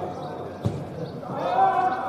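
People talking, with a single sharp thud a little over half a second in: a football being kicked on the pitch.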